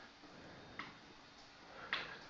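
A quiet room with a couple of faint short ticks, one just under a second in and another near the end.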